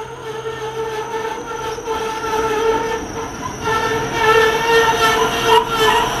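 SA133 diesel railcar pulling into the station and slowing, with a steady high-pitched squeal over its running noise. The sound grows louder as the train draws alongside and jumps up again about halfway through.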